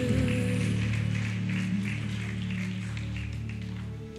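Live worship band music with acoustic guitars under steady low sustained notes. A sung note bends and is held through the first second or so.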